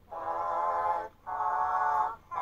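Four voices singing held chords together, a cappella: two long, steady notes with a short break just after a second in, heard through a TV speaker.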